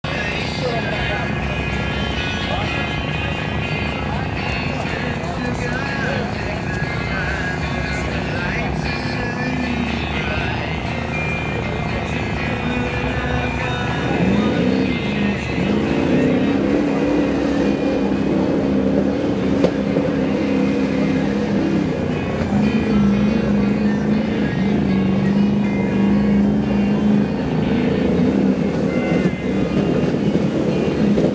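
Lifted square-body pickup's engine running as the truck drives through a mud bog pit. About halfway in the engine grows louder and its note climbs, then holds high under load as the truck pushes through the mud.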